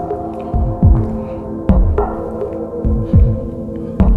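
Dark ambient soundtrack: a steady droning hum under a slow, heavy heartbeat-like pulse of low thuds, about one a second and some doubled.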